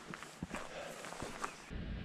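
Footsteps of a person walking up a dirt trail strewn with leaves: a handful of soft, uneven steps. Near the end a low steady rumble comes in.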